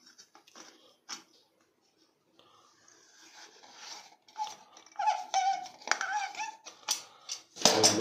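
Water-pump pliers clicking against the metal centre nut of a stainless-steel sink strainer as the nut is worked loose. Midway a wavering, squeal-like tone rises over the handling for about two seconds.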